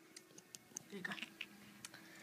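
Faint, irregular small clicks and taps of a Lego minifigure being handled as its helmet is worked off, about half a dozen spread through the moment. A brief faint murmur comes about a second in.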